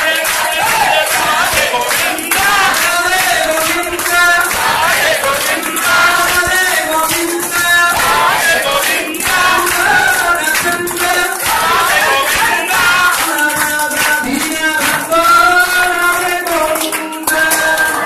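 A crowd of devotees singing a devotional song together, with steady rhythmic handclapping keeping the beat.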